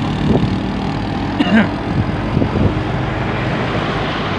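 Car engine running and road noise while driving, heard from inside the cabin, steady throughout, with one brief higher-pitched sound about a second and a half in.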